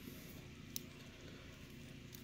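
Near-silent room tone with one faint, short click about a third of the way in, from the plastic action figure being handled.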